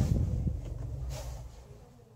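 Mazda 3's engine idling and then switched off with the push-button starter; its low running hum dies away in the last second.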